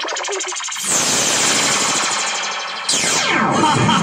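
Electronic sound effect played over stage loudspeakers: a pulsing tone that climbs steeply in pitch through the first second, a dense rushing wash, then a steep downward pitch sweep near the end.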